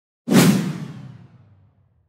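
Whoosh sound effect added in editing: it hits suddenly and fades away over about a second and a half, settling into a low rumble as it dies.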